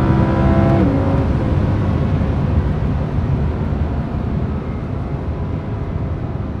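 Inside the cabin of an Audi R8 V10 Plus, its rear-mounted 5.2-litre naturally aspirated V10 holds a steady note, then drops away about a second in. Tyre and road rumble carry on and slowly fade.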